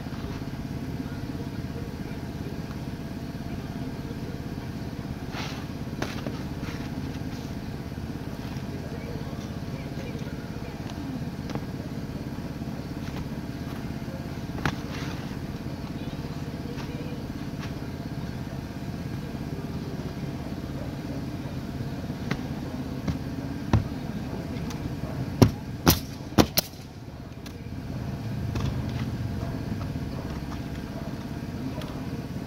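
A pneumatic roofing nailer firing several sharp shots, loudest in three quick shots about 25 to 26 seconds in, over a steady low mechanical running noise.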